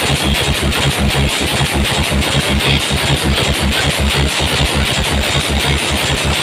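An engine idling with a steady rapid thudding, about eight beats a second, over crowd and street noise.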